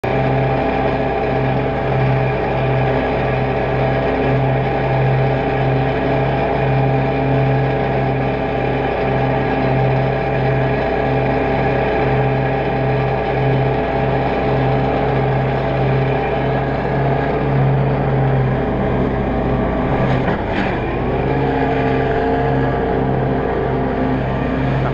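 Dixie Chopper zero-turn mower's engine running steadily with an even throb. About twenty seconds in there is a brief jolt and a dip in the engine note as the mower loses its hold on the steep grass bank and slides, after which the note settles a little higher.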